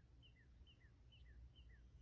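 Near silence with faint bird chirps: short, falling notes repeated evenly at about four a second, alternating higher and lower.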